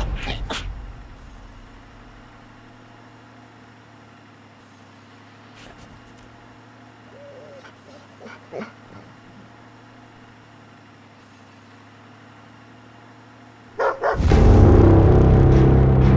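A low, quiet steady hum, then about two seconds before the end a dog suddenly breaks into loud barking.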